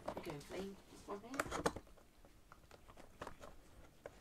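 A cardboard box being handled and cut open with a knife: a few sharp clicks and scraping ticks, louder about a second and a half in, with a faint low murmuring voice near the start.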